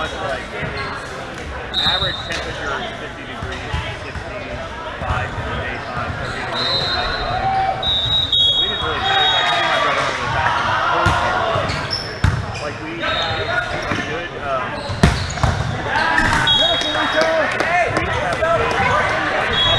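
Volleyball gym noise in a large, echoing hall: many players' voices overlapping, with the thuds of volleyballs being hit and bouncing, two louder ones about twelve and fifteen seconds in.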